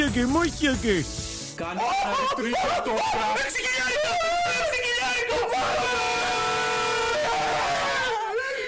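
A man shouting and laughing in excitement over music, celebrating a big slot-machine win.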